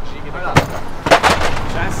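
Three sharp, loud knocks of gear and hard cases banging inside a van's cargo area as it is loaded. The first comes about half a second in, and two come close together just past the middle; the second of these is the loudest.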